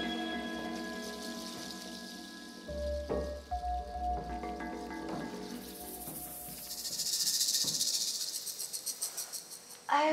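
Background score of soft sustained tones with a few accented notes. A fast, high rattle swells in about two-thirds of the way through and fades out near the end.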